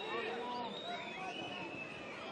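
Open-air football stadium ambience: faint, distant voices and calls from players and a sparse crowd over a steady background hum.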